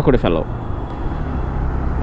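Motorcycle running steadily at cruising speed: a low, even engine drone mixed with wind and road rumble heard from on the moving bike.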